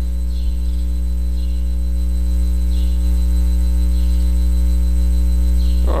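Steady electrical mains hum with a stack of higher overtones, unbroken throughout.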